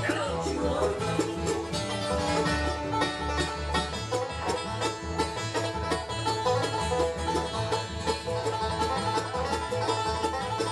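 Live acoustic bluegrass band playing an instrumental passage: quick picked mandolin notes over a steady upright-bass pulse.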